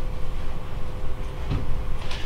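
Room tone in a meeting room: a steady low rumble with a faint constant hum, and one brief soft sound about one and a half seconds in.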